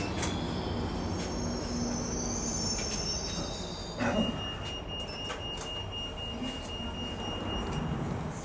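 London Underground station passenger lift travelling in its shaft: a steady low rumble with a faint high whine, a knock about four seconds in, then a thin steady high tone for several seconds.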